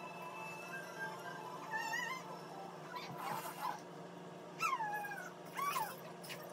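A dog whimpering: a few short, high whines that fall in pitch, one wavering whine about two seconds in and two more near the end, over a low steady hum.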